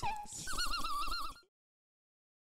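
A high warbling note, wobbling quickly and evenly in pitch after a short downward slide, ends the sung jingle and cuts off suddenly, leaving silence.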